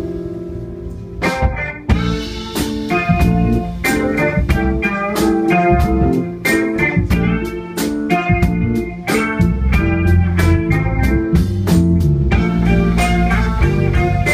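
Live rock band playing an instrumental passage on electric guitar, keyboard and drum kit. A held chord dies away, then the drums and full band come back in about a second in and play on in a steady rhythm.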